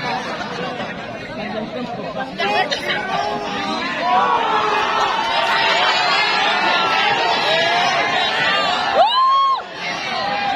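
Volleyball crowd chattering and calling out, many voices at once. About nine seconds in, one loud call rises in pitch, holds briefly and stops.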